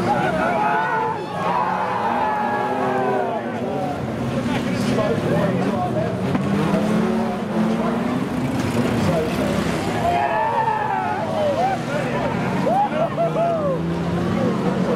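Several banger racing cars' engines revving at once, their pitch rising and falling over and over as the cars jammed in a pile-up try to push free.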